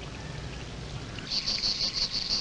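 Low outdoor hiss, then, from about a second and a half in, an insect's rapid, high-pitched pulsing chirr.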